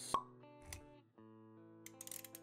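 Intro music with plucked, held notes. A sharp pop sound effect comes just after the start, and a softer low thump follows about a third of the way in.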